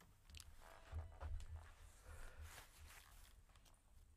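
Near silence with faint low bumps and rustles, loudest about a second in: handling noise as the electric guitar and its amplifier are touched.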